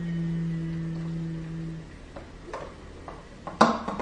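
A person humming one steady held note for about two seconds, then a few light taps and a sharp clink near the end, while soda is poured into a large glass jug.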